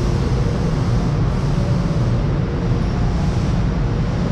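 Steady low mechanical rumble with a faint hum above it.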